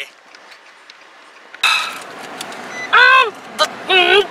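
Quiet, steady road noise inside a moving car, then an abrupt jump in level, and from about three seconds in a voice singing short, sliding, held notes.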